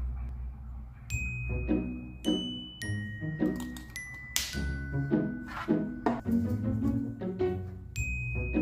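Background music: a gentle, steady pattern of struck notes with bright, ringing bell-like tones over it.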